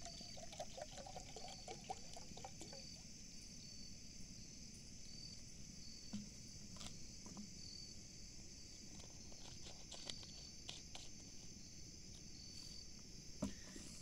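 Water poured from a plastic bottle into a JetBoil stove's cooking cup for about three seconds, then stopping. Insects chirp steadily and high throughout, with a few light handling clicks.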